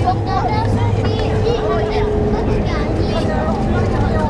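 Incheon Airport shuttle train, a driverless rubber-tyred people mover, running at speed through its tunnel, heard from inside the car: a steady low rumble with a faint steady whine over it. People talk in the background.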